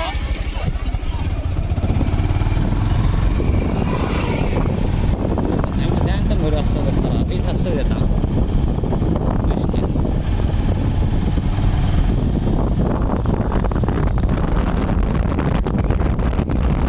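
Steady engine and road rumble heard from on board a small moving vehicle, with constant jolting rattle.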